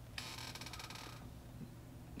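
Faint rustle of a hard plastic coin case being handled, lasting about a second, over a low steady hum.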